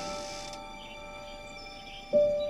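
Soft piano film-score music between phrases: a held piano note fading away under a high shimmering sparkle that stops about half a second in.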